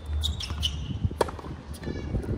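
Tennis ball impacts during a hard-court rally, with one sharp pop a little past the middle as the loudest sound, over a low steady rumble.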